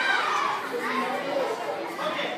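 A crowd of children talking and calling out at once, many voices overlapping.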